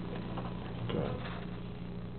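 A low steady hum with a few faint clicks early on and a soft sound about a second in.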